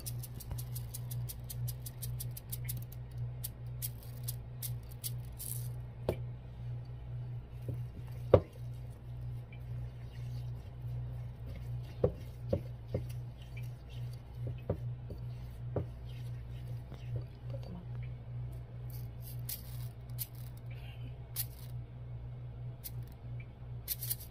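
A fork stirring melted white chocolate with sprinkles in a bowl: soft scraping with scattered clicks and taps against the bowl, the sharpest clack about eight seconds in. A rapid patter of small clicks in the first few seconds as sprinkles are shaken in. A steady low hum runs underneath.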